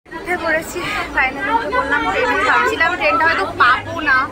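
A woman talking close to the microphone, with other people chattering behind her and a low steady rumble underneath.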